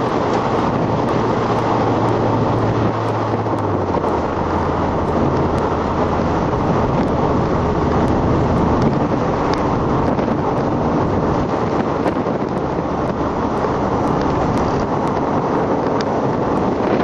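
Audi TT at speed, heard from inside the cabin: a steady loud rush of engine, tyre and wind noise, the engine's note stepping down in pitch about four seconds in.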